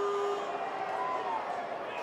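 Stadium crowd noise at a rugby league match: a steady haze of many voices as the attack nears the try line.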